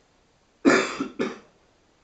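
A person coughing twice, the two coughs about half a second apart, a little over half a second in.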